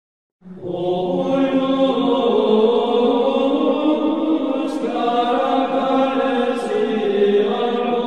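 Chanting voices holding long notes that shift slowly in pitch, starting about half a second in.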